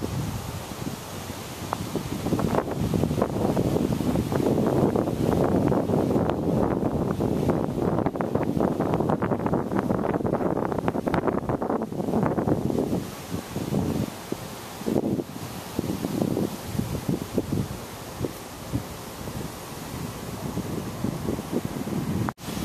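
Wind gusting across the camera's microphone: a low rushing buffet, strongest in the first half, then coming and going in shorter gusts from about thirteen seconds in.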